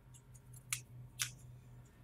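Faint, short scratchy strokes of a flat paintbrush's bristles working dry petal dust against a paper towel and a gumpaste stem, with two sharper strokes about half a second apart near the middle, over a low steady hum.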